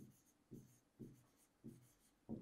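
Faint pen strokes on an interactive board's screen as the word 'unknown' is written by hand, about one stroke every half second.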